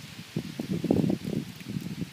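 Rustling of brush and leaves being pushed through, an uneven run of soft noises that is loudest about a second in.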